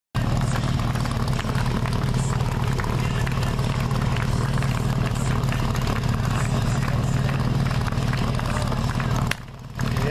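A portable fire pump's engine running steadily and loudly with an unchanging hum. The sound drops away abruptly for a moment near the end.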